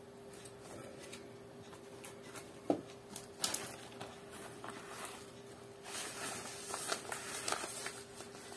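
Faint rustling and light knocks of packages and packaging being handled, with a couple of sharper clicks a few seconds in, over a faint steady hum.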